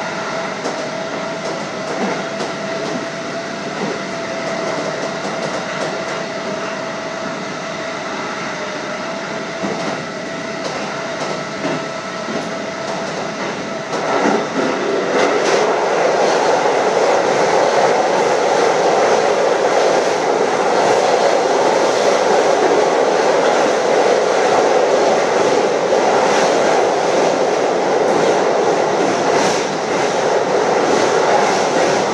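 JR Hokkaido 711 series electric train running, heard from the driver's cab: wheels on rail with a steady whine through the first half. About 14 seconds in, the running noise turns louder and rougher as the train rolls onto a steel truss bridge.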